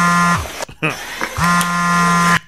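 Telephone ringing: a steady, buzzy ring tone about a second long, repeating about every two seconds, with one ring ending just after the start and the next beginning about a second and a half in.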